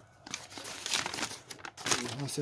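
Folded paper instruction sheets being unfolded and handled, crinkling and rustling. It starts a moment in and is loudest just before the end.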